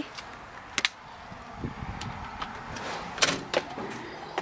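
A house door being unlocked and opened: a handful of sharp clicks and knocks from its keypad deadbolt and lever-handle latch, the loudest pair about three seconds in.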